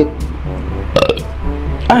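A man burping once, about a second in, after a large meal, over light background music.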